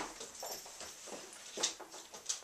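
A dog's paws and claws on a wooden floor and a small wooden teeter board: a few soft taps as it steps off and moves around the board, the clearest near the end.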